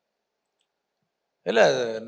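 Dead silence for about a second and a half, broken by two faint clicks, then a man starts speaking into a microphone.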